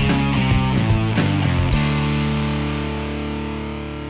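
Short rock music sting on electric guitar: a quick run of notes, then a held chord that rings out and slowly fades.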